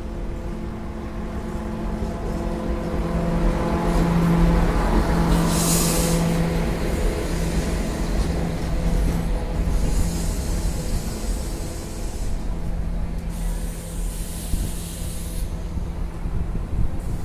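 Diesel multiple unit train pulling slowly into a platform and braking to a stop, its engine hum growing louder as it draws alongside. A sharp hiss of brake air comes about six seconds in, with fainter hisses later.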